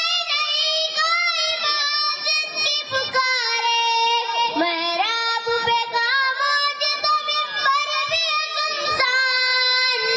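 A boy's solo voice singing a naat, an Urdu devotional song, without instruments. He sings in a high register with long held notes that bend and ornament.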